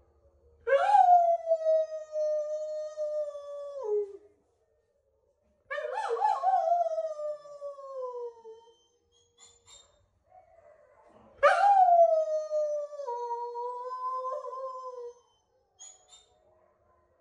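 Female Noble Shepherd wolfdog (grey wolf × German Shepherd hybrid) howling: three long howls, each opening with a sharp upward swoop and then held. The second slides down in pitch and the third dips and wavers near its end, giving the howl its quirky, whiny 'hin-hin' character.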